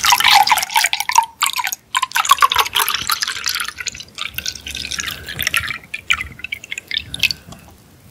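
Lime ade poured from a paper carton into a tall glass, splashing and gurgling, with two brief breaks in the stream early on. The pitch rises as the glass fills, and the pour tapers off about six to seven seconds in.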